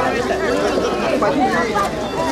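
A crowd of people talking at once close by: overlapping chatter with no single voice standing out.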